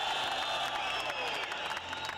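Large arena crowd cheering and clapping: a dense, steady mass of many voices, high held calls and applause.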